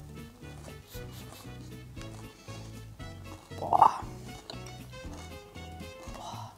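Background music with a steady beat and a stepping bass line. A brief, higher sound rises above it a little past halfway.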